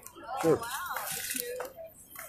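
Indistinct voices of people talking nearby, with one loud voice about half a second in.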